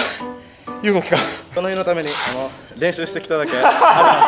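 A voice with long, bending vocal sounds over background music.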